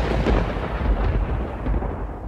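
A loud, deep rumble of noise, a sound effect at the opening of a radio station ident; its higher part fades away in the second half, leaving the low rumble.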